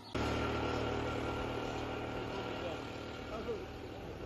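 A motor vehicle engine running steadily with a low hum. It comes in suddenly just after the start and slowly fades.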